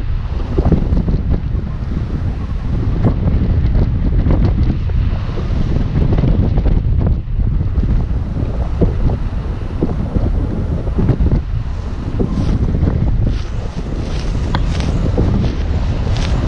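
Airflow buffeting the camera's microphone in flight under a tandem paraglider: a loud, steady low rumble broken by many short pops.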